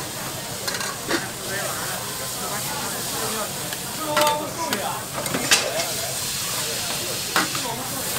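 Noodles and vegetables sizzling on a hot flat steel griddle, a steady frying hiss, as metal spatulas scrape and clack on the plate. Several sharp metal clinks stand out, the loudest about four and five and a half seconds in.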